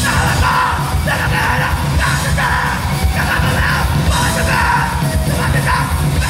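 Hardcore punk band playing live: fast drums, bass and electric guitar, with a shouted lead vocal that comes in right at the start in short, barked phrases.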